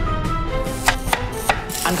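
Kitchen utensil strikes: three sharp knocks in quick succession from about a second in, over faint music.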